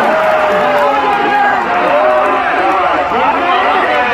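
A man commentating into a microphone over a loudspeaker, with crowd noise beneath.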